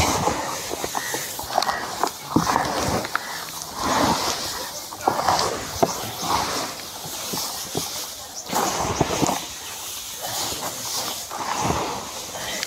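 Hands mixing damp cattle feed mash of chopped paddy straw, green grass and mustard cake in a plastic tub: irregular rustling and soft wet scrunching as the straw is turned over.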